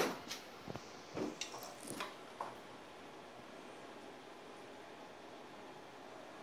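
Hands handling a spool of fishing line set on a screwdriver: a few light clicks and knocks in the first two and a half seconds, then only a faint steady hiss.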